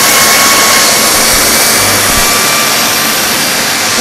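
Master Chef 1600 W upright vacuum cleaner running steadily: a loud rush of air with a high, even motor whine.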